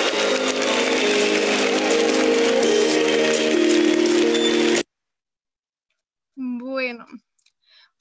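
A large conference-hall crowd applauding and cheering over music with sustained notes, heard as video playback through a video call; it cuts off abruptly about five seconds in.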